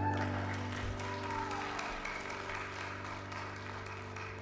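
The last held chord of a worship song on keyboard ringing out and slowly fading, with scattered clapping from the congregation.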